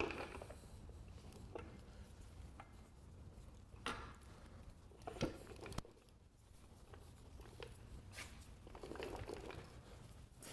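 Faint handling noise as two heavy NetGain Warp 11 electric motors are pushed together so their shafts meet in a coupler: a low scuffing with a few light knocks between about four and six seconds in.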